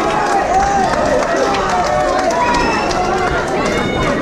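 Crowd of spectators, many voices shouting and talking over one another at once.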